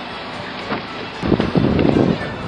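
Wind buffeting an outdoor microphone: a steady rush, then a much louder, ragged rumble from a little past halfway.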